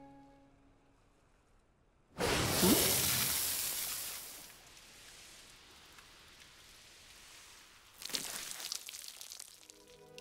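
Gentle music fades out, then a sudden loud rush of noise comes about two seconds in and fades away over a couple of seconds; a second, crackly rush of noise follows near the end.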